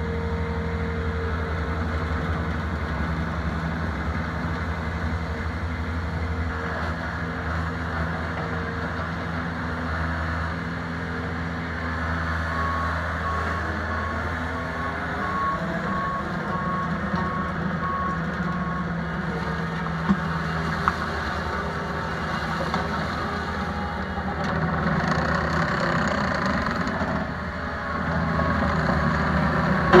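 Bobcat T190 compact track loader's diesel engine running steadily as the machine travels and turns, with its backup alarm beeping about twice a second for several seconds midway and again briefly near the end. The engine grows louder in the last few seconds.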